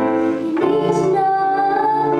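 A woman singing to her own upright piano accompaniment, holding one long note through the middle.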